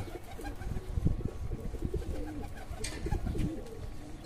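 Domestic pigeons cooing in a wire-mesh loft, low wavering coos from several birds overlapping, with a brief rustle about three seconds in.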